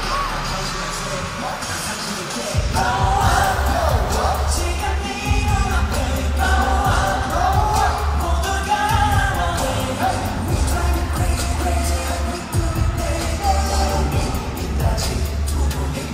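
Live pop concert music with singing over the band's backing track. A heavy bass beat comes in about two and a half seconds in.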